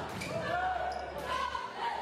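Live basketball game sound in a gymnasium: a ball dribbled on the hardwood court, with short squeaks and voices from the crowd and bench.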